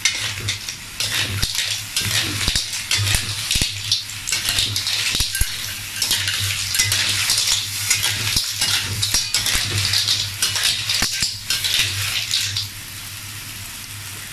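A metal ladle scraping and clanking against an aluminium wok as clams are stir-fried and tossed, with their shells clattering and the pan sizzling. The tossing stops about a second before the end, leaving a quieter sizzle.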